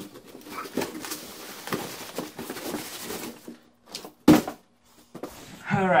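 Cardboard shipping boxes being handled and shifted, with rustling, scraping and small knocks. About four seconds in there is one sharp, loud knock, like a box set down on the table.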